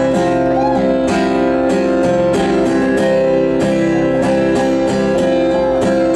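Live band playing an instrumental passage: an acoustic guitar strummed in a steady rhythm over held keyboard chords, with an electric bass or guitar underneath.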